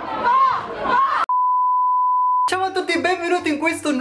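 A crowd of people shouting for about a second, cut off abruptly by a single steady high-pitched electronic bleep lasting about a second, the usual censor-bleep tone; a man's voice follows.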